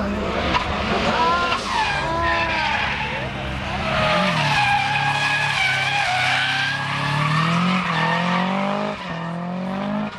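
Drift car's engine revving hard, its pitch swinging up and down as the car slides sideways, with tyres squealing through the middle. The engine pitch climbs again near the end.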